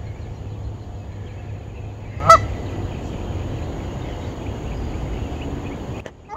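A Canada goose gives one short, loud honk about two seconds in, over a steady low background rumble.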